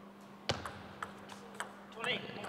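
Table tennis rally: a ball hitting bats and the table in a series of sharp clicks, the loudest about half a second in.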